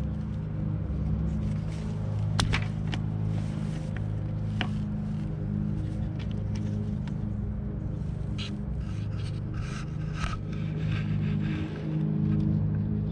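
A few sharp plastic clicks, then scraping and rustling, as a fog-lamp wiring-harness connector is worked free of its mounting clip behind a minivan's bumper, over a steady low hum.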